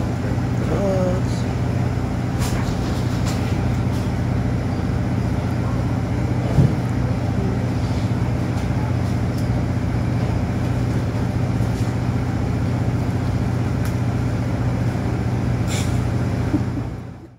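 Steady drone of a passenger riverboat's engine, a constant deep hum with unchanging low tones, with one short knock about six and a half seconds in.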